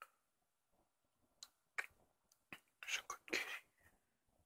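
Faint rustling of a hand stroking a long-haired cat's fur and the bedding, with a few soft clicks and a short, louder stretch of rustling about three seconds in.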